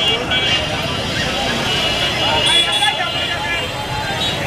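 Busy street hubbub: many people talking over one another, mixed with road traffic from rickshaws and other vehicles, at a steady level.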